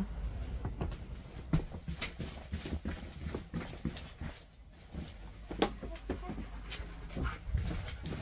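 A husky making a few short whimpering sounds among scattered clicks and rustles of movement.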